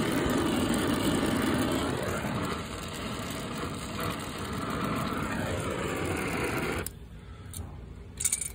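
Air-acetylene torch, fed from an MC tank, burning with a steady rushing noise as it heats a brazed copper refrigerant line joint to free a kinked elbow. The torch is shut off and the noise stops abruptly about seven seconds in.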